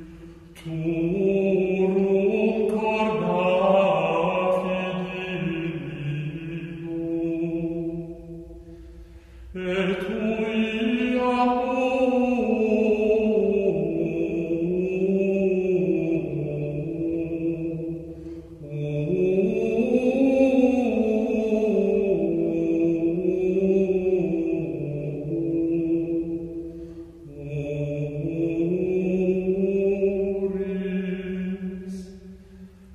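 Gregorian chant: slow, unaccompanied plainsong sung on one melodic line that rises and falls smoothly. It comes in long phrases of about nine seconds, with short breaks between them. Three full phrases are heard, and a fourth begins near the end.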